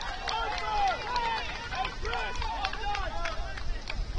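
Distant shouts and calls from players on a soccer pitch: several voices overlapping with no clear words, over a low rumble.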